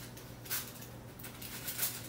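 Hands peeling up the skin of a raw whole chicken in a foil-lined pan: a few short, soft rustling handling noises, about half a second in and again near the end.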